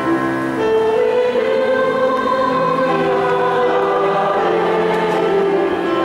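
Church choir singing a hymn in long held notes that shift in pitch every second or so.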